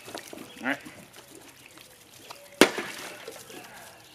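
Khopesh blade hitting a water-filled plastic gallon jug once, a sharp hit about two and a half seconds in that cuts into the jug but not all the way through. Water trickles and splashes from the jug.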